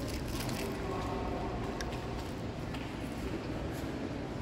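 Steady low background rumble of room noise, with a few faint clicks.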